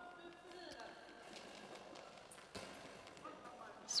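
Quiet sports hall with faint voices and a few short knocks and thuds, then a goalball thrown along the court near the end, its internal bells jingling as it rolls.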